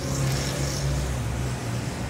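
A steady low hum, with a faint hiss in the first half.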